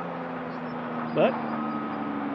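Steady low drone of heavy machinery at a rock quarry, holding a few level pitches without change.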